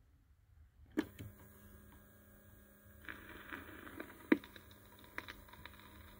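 A turntable stylus set down on a 45 rpm vinyl single with a sharp click about a second in, then faint surface noise with scattered crackles and a steady hum as it plays the lead-in groove. A louder pop comes a little past four seconds.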